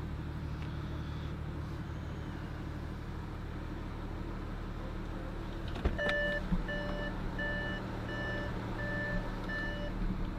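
Audi A6 3.0 TDI V6 turbo diesel idling steadily, heard from inside the cabin. About six seconds in the interior door handle clicks open and a warning chime starts beeping, about seven beeps at a little under two a second, as the driver's door is opened with the engine running.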